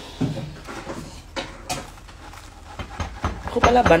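Kitchen handling noises: a few sharp knocks and clacks of utensils and dishes, a pair about a second and a half in and a quick cluster about three seconds in.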